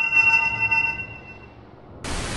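Synthesized logo sting: a held, bright electronic chord of several steady pitches that fades away in the second half.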